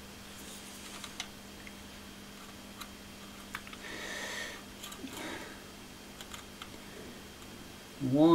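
Soldering iron working a wire joint on a terminal: faint small clicks of the iron and leads being handled, and a short sizzle of flux about four seconds in, over a faint steady hum.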